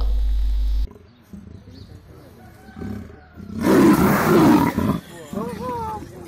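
A leopard trapped in a wire cage snarling: one loud, harsh outburst about four seconds in, lasting over a second. The last words of a narration fill the first second, and a person's voice is heard near the end.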